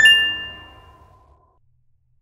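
Logo-sting chime: one bright ding struck once, ringing out and dying away over about a second and a half, over the last of a fading music bed.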